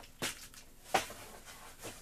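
Cardboard boxes handled and lifted out of a cardboard shipping box: a few short knocks and scrapes, the clearest about a quarter second and a second in.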